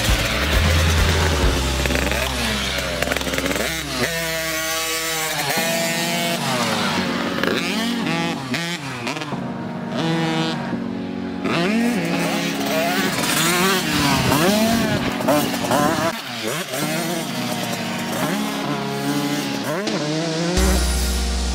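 A 50cc kid's dirt bike engine revving up and down as it is ridden around the track, its pitch rising and falling again and again with each burst of throttle.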